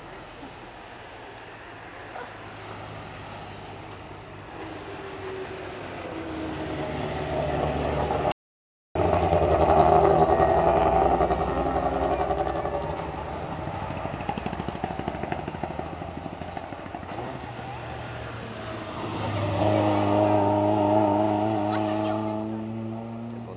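Hill-climb race cars powering through a hairpin one after another, engines revving and rising in pitch as they accelerate past. The sound swells twice, loudest about ten seconds in and again near the end, and cuts out for a moment about eight seconds in.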